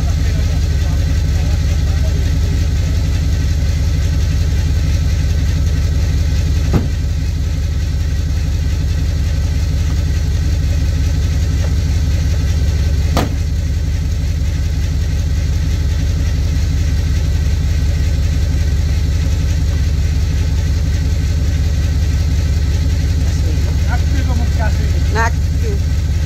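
Lifted classic car's engine idling steadily with a low, even rumble. Two sharp clicks come about seven and thirteen seconds in.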